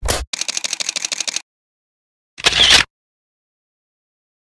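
Camera shutter clicks: a single click, then a rapid run of about ten clicks a second lasting about a second. A louder short noisy burst follows about two and a half seconds in.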